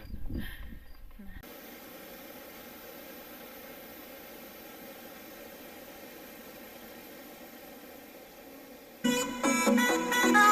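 Steady rush of water pouring from spouts into a pond. About a second before the end, background music with plucked guitar comes in loudly.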